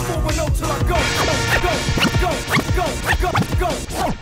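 Hip hop beat with turntable scratching over it: a run of quick back-and-forth scratches, about three a second.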